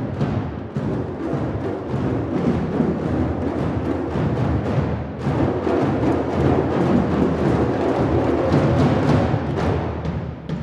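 An ensemble of djembes played by hand in a fast, dense rhythm. It grows louder through the second half and eases off slightly near the end.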